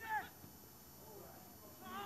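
A short, high-pitched shout from a player or spectator on a football pitch right at the start, then faint field sound, with more shouting starting near the end.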